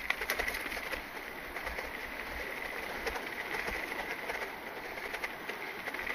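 Mountain bike rolling along a dry dirt trail, heard from a handlebar-mounted camera: steady tyre and ride noise with scattered clicks and rattles as it goes over bumps.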